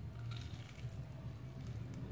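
Biting into a crispy batter-fried banana fritter: a few short crunches, over a steady low hum.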